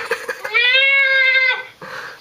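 A young man's high falsetto wail sung into a microphone: one held note of about a second that glides up slightly and then stays level, after a short ragged sound at the start.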